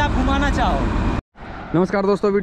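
Men talking over the low, steady rumble of a running Wirtgen WR 2400's V8 twin-turbo engine. The sound cuts off abruptly about a second in, and a man's voice starts again shortly after.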